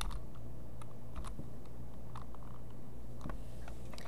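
Sparse, faint clicking at a computer, a few irregular clicks over a low steady hum.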